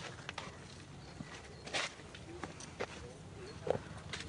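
Scattered crackles and clicks of dry leaves and litter as macaques step and shuffle through them, with a brief squeak near the end.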